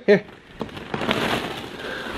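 A bagful of hollow plastic ball-pit balls poured out from a mesh bag, clattering onto each other and the floor in a rapid patter of light clicks that starts about half a second in.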